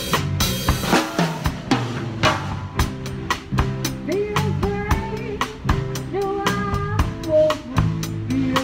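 Drum kit played with sticks in a steady beat of kick, snare and hi-hat strikes, with a cymbal crash about half a second in that rings and fades. Backing music with sustained, sometimes sliding pitched notes sounds beneath the drums.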